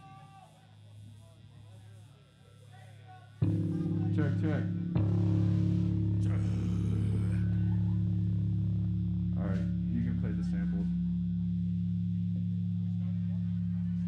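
Electric guitar and bass through amplifiers, faint at first, then a loud, distorted low chord comes in suddenly about three and a half seconds in and is held, ringing on steadily.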